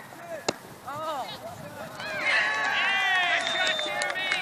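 A soccer ball kicked once, a sharp thud about half a second in. From about two seconds in, several spectators shout and cheer together as the shot goes in for a goal.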